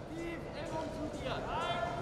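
People's voices: brief low talk, then a high-pitched call about a second and a half in.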